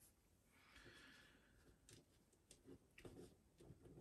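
Near silence: room tone with a few faint, soft clicks in the second half.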